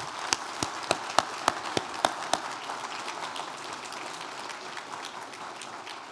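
Audience applauding, with a run of sharper, close claps about three a second during the first two seconds or so, after which the applause thins out.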